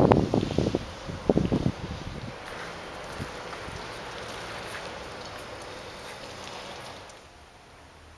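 A steady, even hiss of outdoor background noise follows a brief stretch of voices in the first second or two. The hiss drops away about a second before the end.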